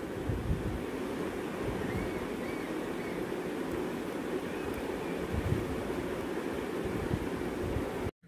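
A steady rushing hiss, with faint scratching of a ballpoint pen writing a short phrase on notebook paper and underlining it.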